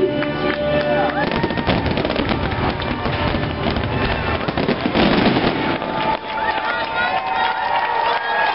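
A dense fireworks finale barrage of rapid booms and crackling bursts. The barrage ends about six seconds in, and the crowd starts cheering.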